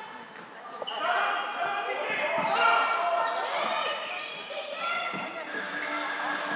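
Voices calling and shouting across an indoor sports hall during a floorball game, with a few short knocks from play on the court.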